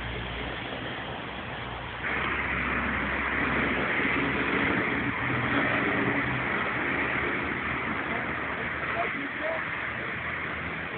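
A motor vehicle running on the road, its engine and road noise jumping suddenly louder about two seconds in and staying up.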